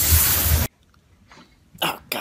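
Loud rushing noise and low rumble of a freight train passing close by, cut off abruptly about two-thirds of a second in. Near silence follows.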